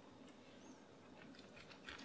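Near silence, with faint crunching near the end as a knife begins cutting through a sandwich of toasted bread.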